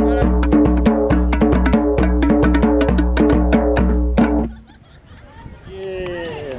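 Bongo drums played with fast hand strokes over a sustained pitched accompaniment. The music stops abruptly about four and a half seconds in.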